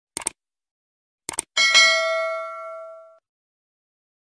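Subscribe-button animation sound effects: a quick double click, another double click about a second later, then a bright bell ding that rings and fades away over about a second and a half.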